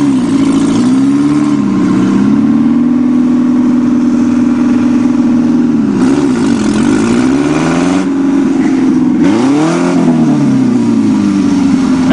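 Engine of a cut-down, roofless VW Golf revving hard. The revs are held high for a few seconds, then drop and climb again twice, as the car is driven for a reverse wheelie.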